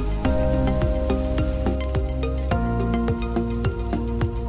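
Background music of held chords that change twice, over breaded chicken patties sizzling as they shallow-fry in oil, with scattered small pops.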